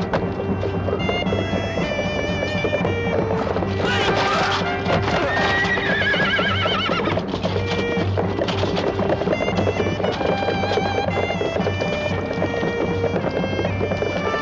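Dramatic soundtrack music over horses neighing and hooves clattering. A long, wavering, falling neigh comes about six seconds in.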